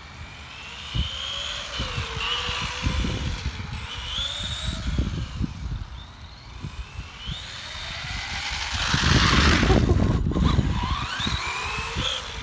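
Tamiya RC buggy's 11-turn Super Modified brushed electric motor whining, its pitch rising and falling as the throttle is worked, with tyre hiss on wet tarmac. The wheels are slipping inside the tyres, so it cannot get the power down. A louder rush of noise comes about nine seconds in.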